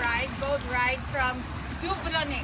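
A woman's high voice calling out a few short, gliding phrases that aren't made out as words, over a steady low rumble.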